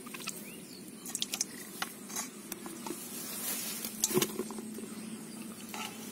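Wet handling sounds of mud and water: small splashes, squelches and clicks as hands work a freshly caught fish by a bowl and bucket, with a louder splash about four seconds in.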